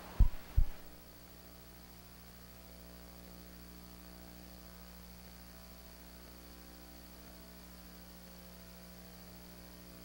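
Steady low electrical mains hum with a faint hiss in the broadcast audio, after two short low thumps in the first second.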